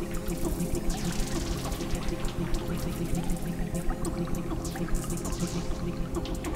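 Electronic synthesizer music in the Berlin School style: a fast sequenced pattern with ticking drum-machine percussion over sustained low chords. Two falling swishes of filtered noise sweep down through it, one about a second in and another near the end.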